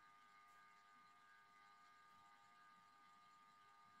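Near silence, with only a few faint steady tones in the background.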